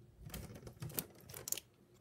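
Irregular light clicks and taps from hands handling the plastic jelly-bean tray and box on a countertop, about eight in the first second and a half.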